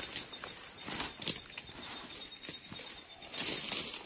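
Rustling and crackling of leaves, twigs and leaf litter as someone moves through dense scrub, with irregular short crackles throughout and a louder stretch near the end.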